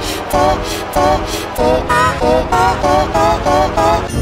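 Heavily effects-processed music: a quick run of short, wavering notes, about four a second, over a low pulsing beat.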